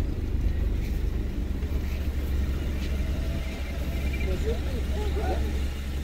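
Car engine running at low speed, heard from inside the cabin as a steady low rumble, with faint voices of people outside.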